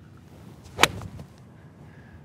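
A golf iron striking a ball off turf: one sharp crack about a second in. The strike is solid but slightly thin, taking little turf.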